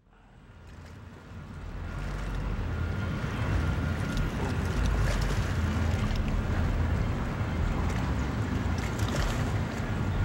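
Wind buffeting the microphone over the wash of sea waves against a rocky shore. The sound fades in over the first two seconds and then holds steady and rumbling.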